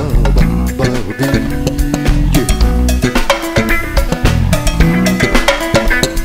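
Live Brazilian jazz quartet playing an instrumental passage between sung lines, the drum kit to the fore over bass and guitar.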